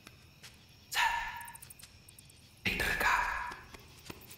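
Two short pitched cries, the first about a second in and the second, longer one near the end.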